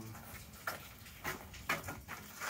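A few faint, scattered knocks and scuffs: footsteps and a metal pizza peel being picked up and set down on a wooden table.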